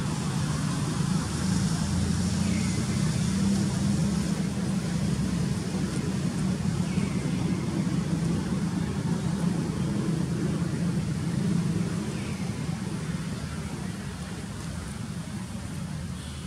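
Steady low rumble of a motor vehicle running close by, easing off after about twelve seconds.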